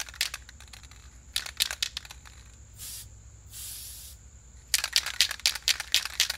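Aerosol spray-paint can: bursts of rattling clicks as the can is shaken, about a second and a half in and again near the end, with short hisses of spray between, around three to four seconds in. A low steady hum runs underneath.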